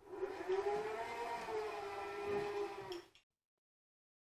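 Electric motor of an ActSafe ACC battery-powered rope ascender running with a steady whine that wavers slightly in pitch, stopping suddenly about three seconds in.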